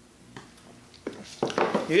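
Drinking glasses set down on a wooden bar top, a couple of short knocks about a second in, after a quiet sip; a man's voice starts at the very end.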